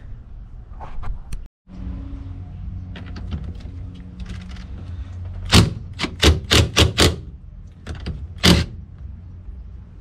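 Impact wrench hammering in short trigger bursts, five in quick succession and then one more a second and a half later, loosening the 17 mm steering-wheel nut only part of the way so the wheel can't fly off.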